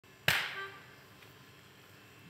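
One sharp slap-like hit about a quarter second in, dying away over about half a second with a few faint ringing tones, then quiet room noise.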